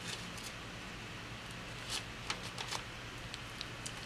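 Faint handling of paper and plastic sticker tabs: fingertips folding clear tab stickers over the edges of journal pages, with a few soft scattered ticks and rustles over a low steady room hum.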